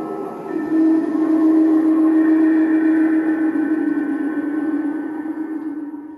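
The Fogging Grim Reaper animatronic's built-in speaker sounding the close of its spooky soundtrack: a long, low gong-like drone with ringing overtones. It swells about half a second in and slowly dies away toward the end.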